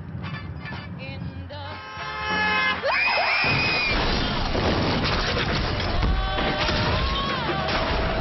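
Car crash: a high rising shriek about three seconds in, then a sudden loud impact and a long run of crashing metal and shattering glass as the car rolls over.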